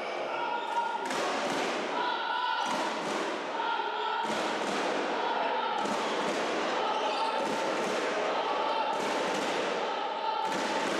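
A volleyball bounced on the sports-hall floor, several thuds about a second and a half apart, echoing in the hall, over a background of players' and spectators' voices.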